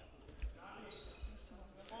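Faint, dull thuds of a handball bouncing on the wooden sports-hall floor as a player dribbles, two of them about three-quarters of a second apart, with faint distant voices in the hall.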